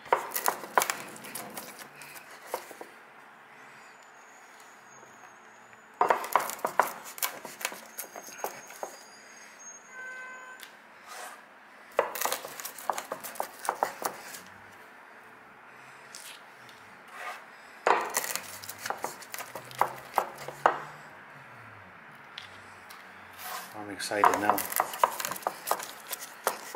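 Wooden rolling pin rolled and pressed over giant isopod legs on a wooden cutting board, cracking and flattening the shells to squeeze the meat out. It comes in bursts of clicks and crunches about every six seconds, with quieter rolling between.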